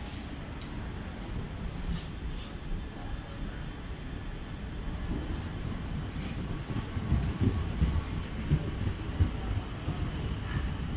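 Passenger train coaches rolling past at low speed as the express departs: a low rumble with irregular knocks of the wheels, growing louder in the second half.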